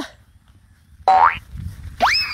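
A man's short, sharply rising call about a second in, a driver's shout urging on a straining water buffalo; a second rising call starts at the very end.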